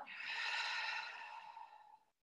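A woman's long, audible exhale, a breathy rush that fades out over about two seconds.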